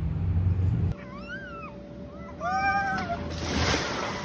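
A low rumble that cuts off about a second in, followed by two short high-pitched calls, each rising and then falling in pitch, about a second apart, over a faint steady hum.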